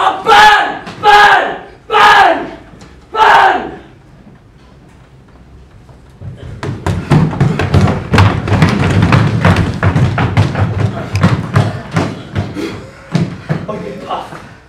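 A man's voice shouting four times, then after a short lull a long rush of many quick thumps and knocks, as of several people running across a wooden stage floor.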